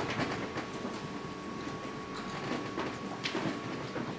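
Steady low rumble with scattered light knocks and shuffling from people moving about, over a faint steady hum.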